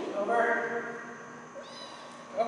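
A drawn-out vocal call, held for about half a second, then faint high chirps near the end.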